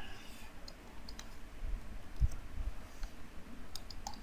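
Faint scattered clicks of the pointing device used for the on-screen handwriting, a handful over a few seconds as the writing is edited, with one low thump about two seconds in.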